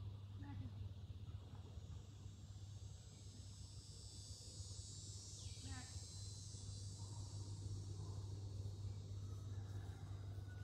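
Faint outdoor ambience: a steady high insect buzz that swells in about three seconds in, over a low steady hum. A short falling run of chirps comes near the middle.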